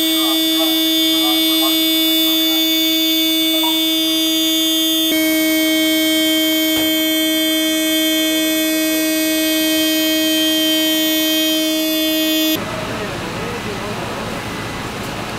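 A fire engine's running machinery gives a loud, steady high whine with many overtones. Its pitch shifts slightly about five seconds in, and it cuts off suddenly near the end, leaving quieter street noise.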